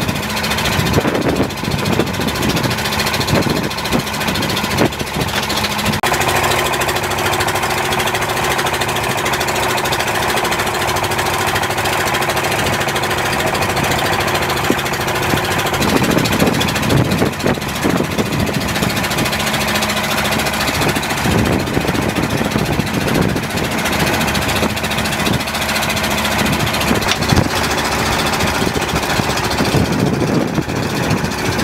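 A fishing boat's engine running steadily, heard close by under wind and sea noise, with a few knocks over it.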